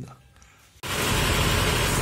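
Near silence for most of the first second, then an abrupt start of a steady, noisy hum: the Lexus LX 570's 5.7-litre V8 idling, heard from underneath the vehicle while the transmission fluid level is set.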